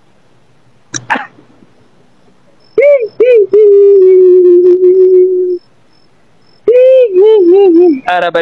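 A woman's voice humming a long, held note for about two seconds, then a wavering, up-and-down hum near the end, after a short cough-like burst about a second in.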